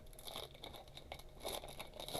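Foil wrapper of a trading-card pack being torn open and crinkled in the hands, faint, with small crackles that grow a little louder near the end.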